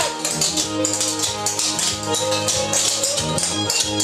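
Recorded music playing while two dancers clog, their shoe taps clicking in quick, uneven runs against the floor over the song.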